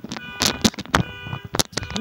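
A run of sharp, irregular clicks and knocks, about a dozen, over a faint steady background tone.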